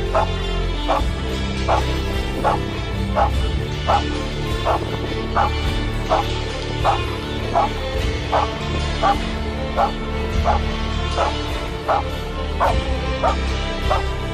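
Rottweiler barking steadily at a helper in a blind, a hold-and-bark with short, evenly spaced barks about every 0.7 seconds, over background music.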